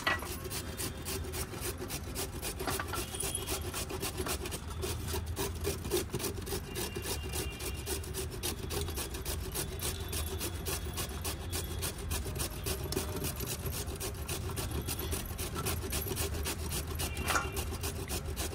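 A carrot being grated by hand on a stainless-steel grater over a steel plate: quick, even rasping strokes, one after another.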